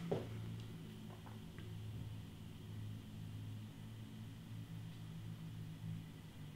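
Quiet room tone with a faint, steady low hum and a couple of faint small clicks about a second in.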